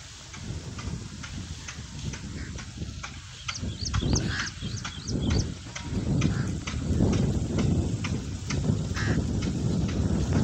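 Dry sunflower stalks and leaves rustling and crackling as a bundle of them is carried through a crop field, with irregular sharp clicks throughout. A low wind rumble on the microphone grows louder about six seconds in.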